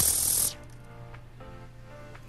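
EGO cordless string trimmer with an Echo Speed-Feed 400 head spinning its line, a loud rushing hiss that cuts off abruptly about half a second in. Faint background music follows.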